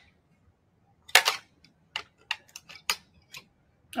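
Eating utensils clicking and scraping against a plate and a plastic yogurt tub: a short scrape about a second in, then a string of sharp, separate clicks.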